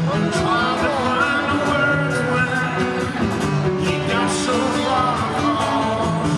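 Live rock band heard from the audience: acoustic guitar, electric bass and drums with a sung lead vocal, cymbals keeping a steady beat.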